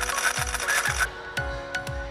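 Background music with a steady beat, overlaid for about the first second by a bright, glittery shimmer sound effect that stops abruptly.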